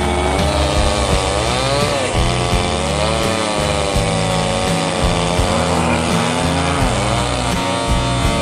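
A chainsaw running and cutting into a thick tree limb, its pitch rising and falling repeatedly as the throttle and cutting load change. Background music with steady tones plays underneath and comes forward near the end.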